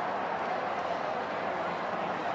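Crowd hubbub: many voices talking and cheering together, a steady wash of noise.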